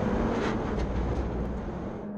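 Onboard sound of a Ferrari Challenge Evo race car's twin-turbo V8 under power on a straight, mixed with wind and tyre noise, steady and easing slightly near the end.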